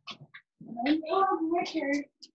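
A long, pitched, meow-like call with a slightly wavering pitch, starting about half a second in and lasting well over a second, after two short sounds.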